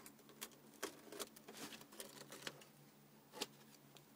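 Faint, irregular clicks and taps from a hand handling a cardboard model mechanism, about half a dozen over a few seconds, over a faint steady low hum.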